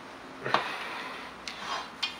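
Handling noise from a linear plain-bearing carriage (a slide block without balls) on an aluminium rail: one sharp click about half a second in, then a fainter tap.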